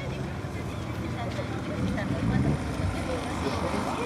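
Background voices of people talking over a steady low rumble that grows louder about halfway through.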